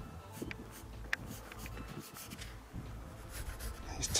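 Pencil scratching on sketchbook paper in short shading strokes, coming at irregular intervals.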